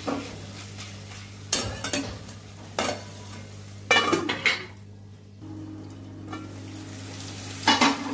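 Steel spatula stirring and scraping paneer cubes in a steel kadai with oil sizzling, broken by sharp metal clanks about 1.5, 3 and 4 s in and again near the end. A steel lid is handled over the pan around 4 s.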